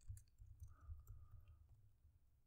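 Faint computer keyboard keystrokes, a few scattered clicks, over a low hum of room tone.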